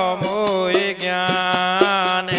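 Bundeli devotional folk music: a wavering melody held over a steady drone, with hand-drum strokes about twice a second.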